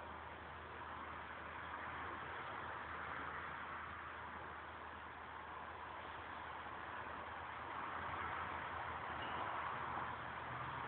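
Steady background hiss with a low hum beneath it, no distinct events.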